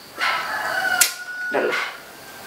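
A rooster crowing: one long call held on a steady pitch for over a second, with a sharp click about halfway through.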